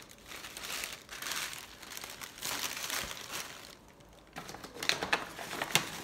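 Gift bag and tissue paper rustling and crinkling as they are handled, in uneven bursts, with a short lull and then sharper crackles near the end.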